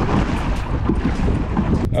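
Wind buffeting the microphone over choppy lake water, with waves and paddle spray splashing against a kayak.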